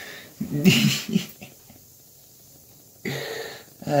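A man's short breathy laugh about half a second in, then a quiet pause, then a voiced 'uh' near the end as he starts to speak.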